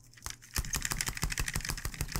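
Over-ear headphones being handled and fitted onto the head close to the microphone: a rapid string of clicks and knocks, about ten a second, starting about half a second in.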